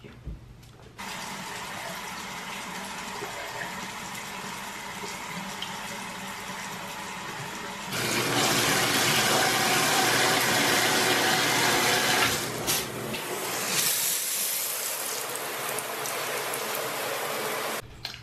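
Water running in a bathroom tub/shower: a steady flow starts about a second in. It gets louder and brighter about eight seconds in, as the single-lever tub/shower faucet is opened, eases a few seconds later, and cuts off just before the end.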